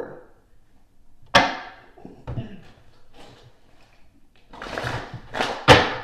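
A card deck being handled on a table: a sharp tap about a second and a half in, a shorter rustle of shuffling cards near the end, and a louder knock just before the end.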